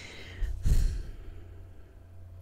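A woman sighing: a breath drawn in, then a heavier breath out a little over half a second in, which puffs against the microphone and is the loudest part.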